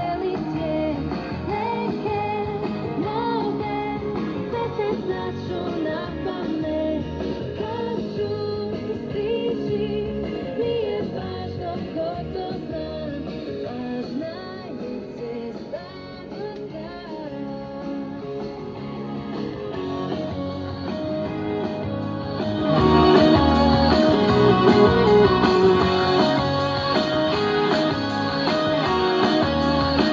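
Iskra Triglav 62A valve radio playing a rock-pop song with singing and guitar through its own loudspeaker. About 23 seconds in, the music becomes louder and fuller.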